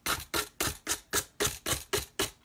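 Emery board rubbed in short downward strokes along the edge of a clipboard, about four scratchy strokes a second, sanding the overhanging paper napkin flush with the edge.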